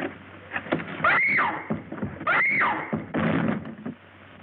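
A woman crying out twice, short rising-then-falling cries about a second apart, amid the knocks and thuds of a brief scuffle at a door as she is seized.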